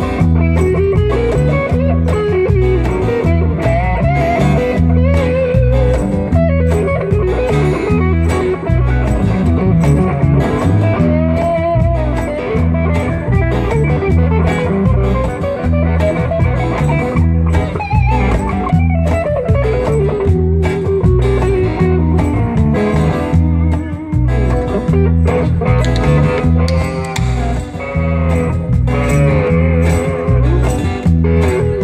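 Live blues-rock band playing an instrumental passage with no singing: a lead electric guitar plays a melody with bent, sliding notes over acoustic guitar and a steady low beat from a cajón.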